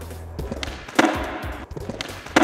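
Skateboard tail snapping against a concrete floor about a second in, popping the board into a switch frontside shove-it, with a short scraping, rolling tail after the pop. Background music plays underneath.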